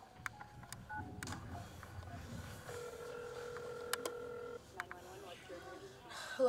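A mobile phone being dialled, with short taps and beeps as the number is keyed in, then a steady ringing tone for about two seconds as the call rings out.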